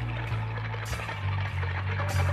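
Music soundtrack in a quieter stretch: sustained low bass notes with little else above them.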